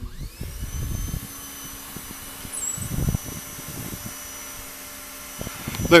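Sony camcorder's lens zoom motor whining steadily as the lens zooms in. The whine rises in pitch briefly as the motor starts and cuts off just before the end. A few low thumps of handling noise come about a second in and again around three seconds in.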